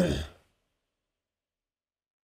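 A man's short sigh into a close microphone, lasting about half a second at the very start.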